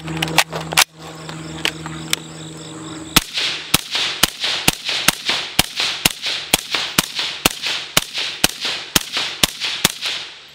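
Suppressed IWI Tavor X95 bullpup rifle firing a steady semi-automatic string of about fifteen shots, roughly two a second, starting about three seconds in. Before that, a few clicks come from the rifle being handled.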